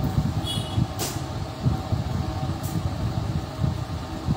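Steady low rumble of moving air and a faint hum from a small room's fan noise on a clip-on microphone, with a short high chirp about half a second in and a sharp click at about one second.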